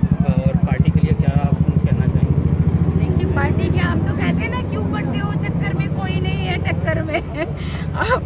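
An engine idling close by with a fast, even pulse, loudest in the first few seconds and dying away near the end, with voices over it.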